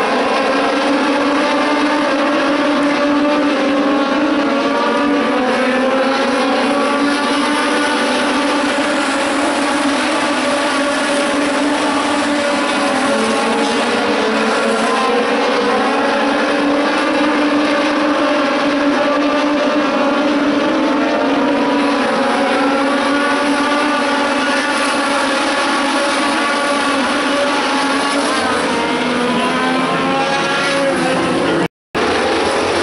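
Several Legend race cars' small high-revving motorcycle engines racing together on a short oval. Their pitches rise and fall steadily as they go through the laps.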